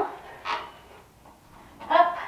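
A woman's short, sharp breath of effort about half a second in, then a brief voiced grunt near the end, as she swings up and inverts on a spinning dance pole.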